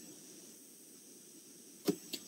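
Quiet room tone with a faint steady high hiss, broken by one short click near the end.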